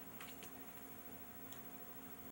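Quiet room tone with a faint steady hum and a few faint, light ticks.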